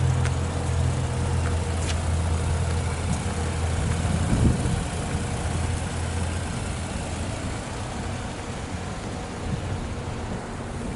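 A motor vehicle engine idling, a steady low hum that fades out around the middle, over outdoor background noise.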